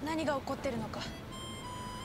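Quiet Japanese dialogue from the TV episode for the first second, then soft background music of held notes starting about a second in.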